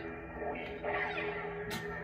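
NeoPixel lightsaber's sound board putting out its steady electronic hum through the hilt speaker, with a short sharp click near the end.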